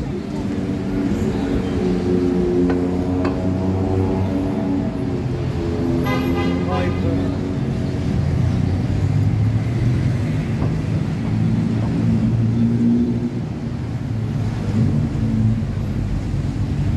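Busy street ambience: road traffic running steadily under the chatter of passing pedestrians, with a short pitched sound about six seconds in.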